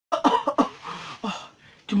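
A man coughing several times into a tissue held to his mouth: a quick run of short coughs, then one more about a second in.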